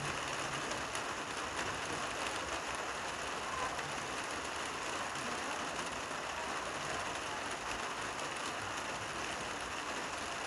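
Steady rain, an even hiss with a dense scatter of small drop ticks and no change in level.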